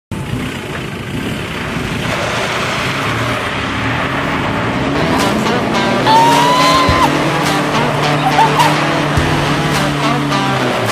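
Ford Ranger 2.2 Hi-Rider pickup's diesel engine revving as its rear tyres spin through loose dirt, with music coming in about halfway through.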